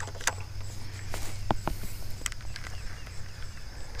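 Outdoor ambience: a steady low rumble, a few faint light clicks, and a faint, steady high insect trill.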